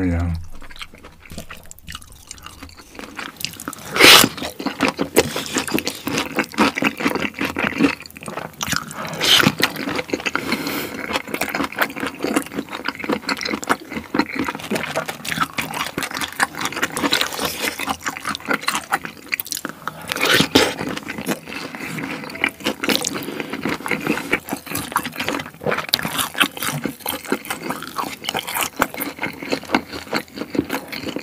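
Close-miked eating sounds: chewing and slurping fried noodles, a dense run of wet, clicky mouth sounds, with a few louder bursts.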